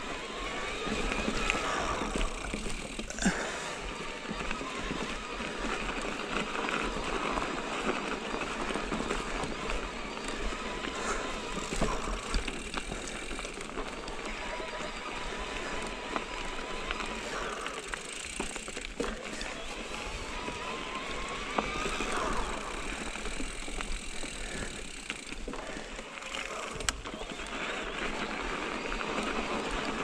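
Mountain bike riding over a dirt singletrack: steady tyre noise over dirt and rocks, with the bike rattling and a few sharp knocks.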